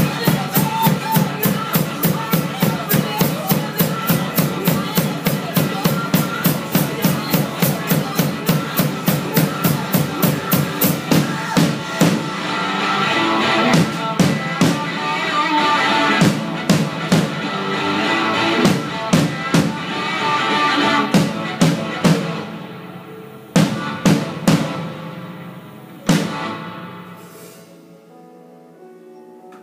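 Acoustic drum kit played along to a recorded rock song. There is a fast steady beat of about four hits a second at first, then sparser accents after about twelve seconds. A few last hits come near the end as the song fades out.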